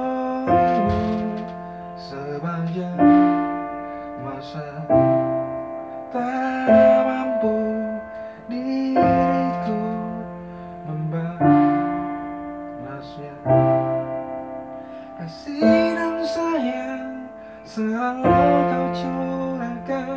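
Electronic keyboard played with a piano voice: slow, sustained chords, a new chord struck about every two seconds and left to fade.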